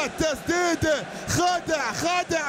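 Only speech: a man's voice giving Arabic football commentary, talking without pause.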